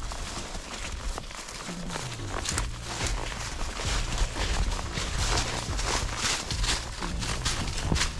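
Horses walking through grass and low brush: irregular hoof steps with rustling of vegetation against legs and saddle.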